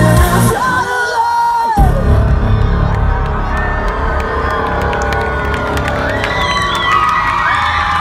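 Live metalcore band playing loud, with distorted guitars, bass and drums, heard from the crowd. About a second in, the drums and bass drop out for about a second under a few held high notes, then the full band crashes back in.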